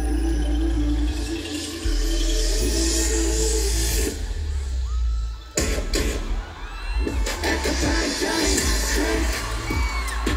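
Loud live K-pop played over a stadium PA with heavy bass, heard from within the crowd, with fans cheering. The bass drops out about four seconds in and comes back with a sudden hit about a second and a half later.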